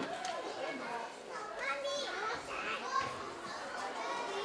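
Many children chattering and calling out at once, their overlapping voices filling the room.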